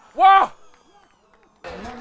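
A man's short shout on the field, about half a second long, rising and then falling in pitch. The field is then quiet, and talking starts near the end.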